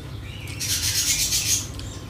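Fingers gathering and squishing rice with chicken curry on a plate: a rasping, crackly rub lasting about a second, just before the mouthful is lifted.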